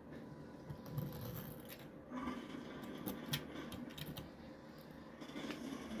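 Faint scraping and rubbing with a few light clicks: a small toy car being handled and moved across a surface.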